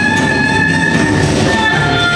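Live improvised jazz from a band of voice, violin, electric bass, guitar and drums. A high note is held, then steps down to a lower one near the end, over a busy, noisy accompaniment that sounds much like a train.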